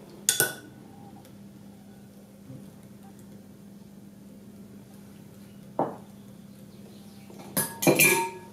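Ceramic and glass kitchen bowls and dishes clinking as they are handled and set down on a table. There is one clink just after the start, another near six seconds and two close together near the end, over a faint steady low hum.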